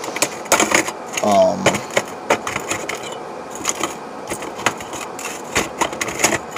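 Small survival-kit items and a metal tin being handled on a workbench: irregular light clicks, taps and clinks of metal on metal and on the bench, with a brief hum from the man about a second and a half in.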